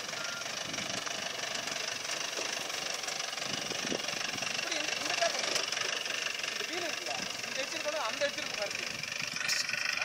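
A customized jeep's engine running at low speed as it crawls over dirt mounds off-road, with people talking in the background.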